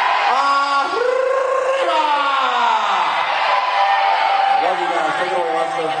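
An arena announcer's long, drawn-out shouts over the PA in an 'arriba'–'derby' call-and-response chant with the crowd, several held calls falling in pitch.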